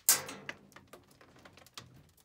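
Loose rock kicked from the stope above coming down a timber ore chute: a sudden crash right at the start, then scattered small clicks and rattles of pebbles trickling down.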